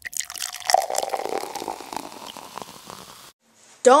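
Watery bubbling and dripping sound, thick with small pops and drips, fading over about three seconds and then cutting off suddenly.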